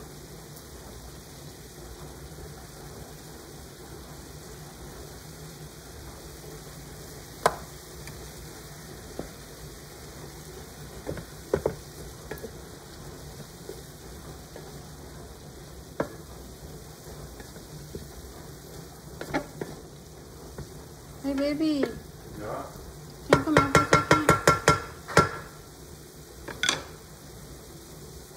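Diced onion, carrots and peas sizzling steadily in a frying pan as the added water cooks off, with occasional sharp clicks of a wooden spoon against the pan while stirring. Near the end comes a quick rattling run of about a dozen clicks.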